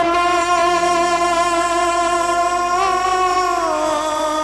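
Bengali kirtan music: one long held melodic note, wavering slightly, that slides down in pitch near the end, with no drumming.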